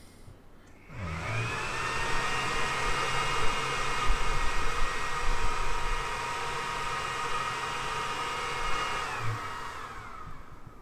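xTool RA2 rotary's stepper motor turning a chuck-held tumbler through a framing pass: a steady whine of several high tones that starts about a second in, glides up in pitch as it gets going, and winds down near the end. The cup making a full rotation and coming back to its mark is the check that the rotary's steps per rotation are set correctly.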